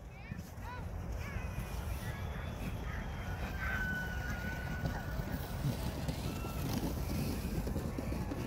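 Low rumble of wind on the microphone, with faint distant voices calling out now and then, one call held for about a second and a half near the middle.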